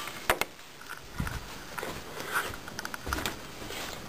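Handling noise as the camera is picked up and moved: two sharp clicks shortly after the start, then scattered light clicks and rustling.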